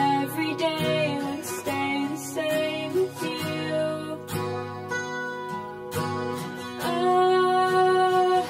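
Song cover: acoustic guitar strumming with a female voice singing, holding a long note near the end.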